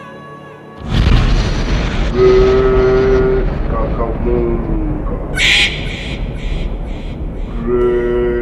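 Dramatic film score: after a quiet start, a sudden boom hits about a second in and leaves a low rumble, with long held horn-like notes laid over it. A bright crash with echoing repeats comes about halfway, and another held note enters near the end.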